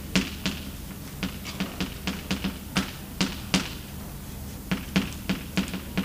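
Chalk writing on a blackboard: a quick, irregular run of sharp taps and clicks as symbols are written, with a short pause about two-thirds of the way through.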